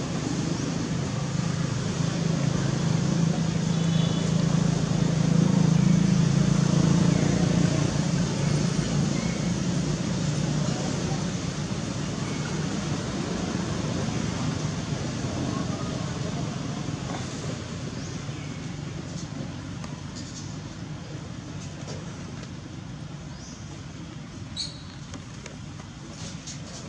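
Low drone of a motor vehicle engine, swelling over the first six seconds and then slowly fading.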